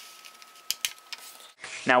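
Faint handling of printer paper as hands fold a sheet and press a crease along it, with a few short sharp crackles from the paper about two-thirds of a second to a second in.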